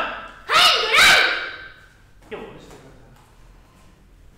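A loud shouted call from a karate student, about half a second in and lasting about a second, of the kind given to announce a kata before performing it. A shorter, softer voiced sound follows a little after two seconds.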